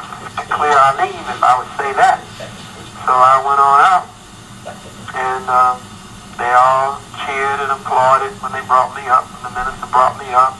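Speech only: one voice talking in phrases, with short pauses between them.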